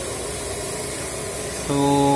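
A steady hiss with no tone or rhythm, ending as a man's voice begins near the end.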